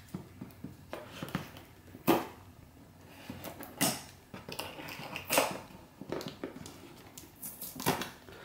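Hands handling a taped cardboard box: scattered light scrapes, taps and clicks on the cardboard, with louder knocks about two, four and five and a half seconds in.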